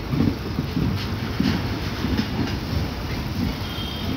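Railway coaches rolling past on the adjacent track, wheels rumbling and clattering irregularly over the rails.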